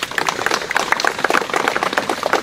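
Crowd applauding: many hands clapping in a dense, continuous patter.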